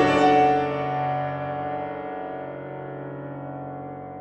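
Piano striking a very loud (sffz) chord in both hands over a deep bass octave, held under a fermata and left to ring, fading slowly.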